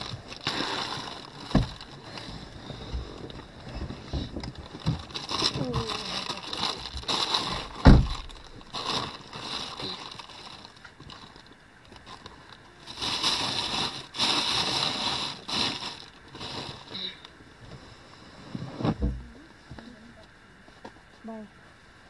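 Indistinct voices in the background with scattered knocks, the sharpest thump about eight seconds in and another near the end.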